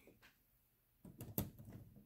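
Hard plastic LEGO Technic parts knocking and clicking as a compartment box is handled and set onto the sorter's beam frame, starting about a second in with one sharper click among a few lighter ones.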